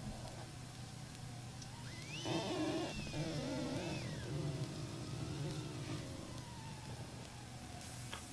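Police patrol car accelerating away from a standstill around a roundabout, its engine and road noise rising for a couple of seconds before settling back to a low cabin drone. A brief high-pitched squeal rises and falls about two seconds in.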